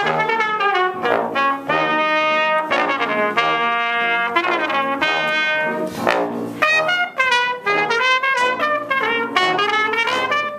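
A trumpet and a trombone playing a duet, a continuous run of changing notes that move more quickly in the second half.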